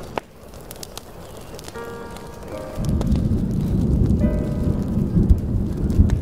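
Smooth jazz chords over steady rain, with a sharp crackle from a wood fire shortly after the start. About three seconds in, a low rumble of thunder comes in and keeps rolling, louder than the music.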